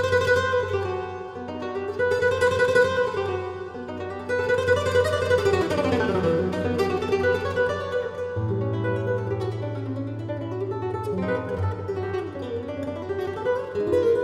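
Solo flamenco guitar, nylon strings fingerpicked: melodic runs that fall and rise in pitch over held bass notes, playing without a break.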